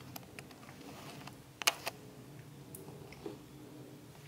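Quiet hand handling of a mirrorless camera while its adapted manual-focus lens is focused, with two sharp clicks close together a little past the middle over a low steady room hum.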